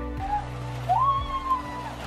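Background music over the rushing splash of water as a woman steps down into a cold plunge pool fed by a small waterfall. One long tone rises and then holds about a second in.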